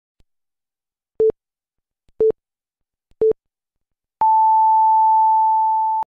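Electronic countdown beeps: three short low beeps a second apart, then a long, higher beep about an octave up that starts about four seconds in and holds.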